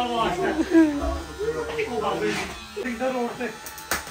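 Electric hair clippers buzzing steadily, fading out about three seconds in, under a child's voice.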